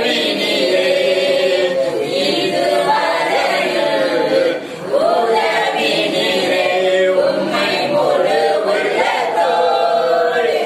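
Several voices singing a worship song together without instruments, in held, gliding phrases, with a short break between phrases about four and a half seconds in.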